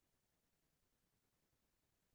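Near silence: only a faint, even background hiss.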